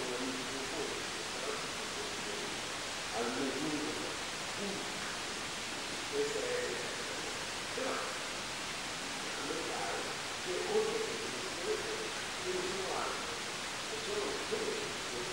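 Faint, muffled speech from the debate, in broken fragments, heard over a steady hiss from the low-level recording.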